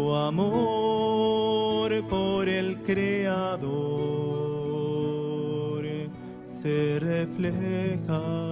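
A group of men singing a slow devotional hymn in long held notes, accompanied by nylon-string classical guitars.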